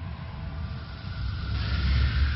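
A low rumbling sound effect that swells into a louder rushing whoosh about one and a half seconds in.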